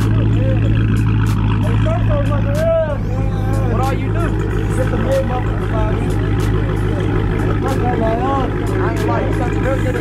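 Dodge Charger's engine idling steadily through its exhaust, a loud low drone, with people talking over it.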